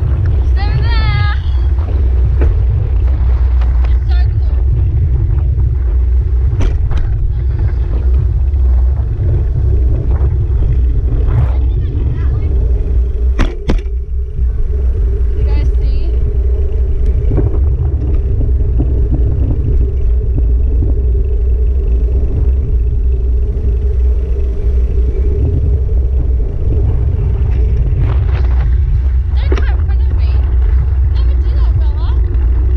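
Steady low rumble of wind buffeting a handlebar-mounted camera while the bike is ridden, with a constant mid-pitched hum underneath. It drops away briefly about halfway through.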